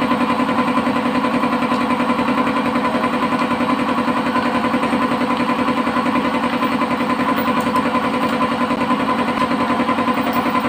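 A motor or engine running steadily with an even droning hum and a fast, regular flutter.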